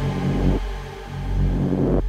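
Electronic psytrance intro sound design: a deep bass rumble under a noise sweep that swells up toward the end and drops off.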